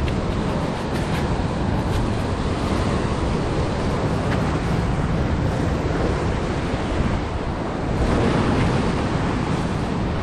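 Ocean surf washing and breaking against a rock ledge, a steady rushing wash, with wind buffeting the microphone.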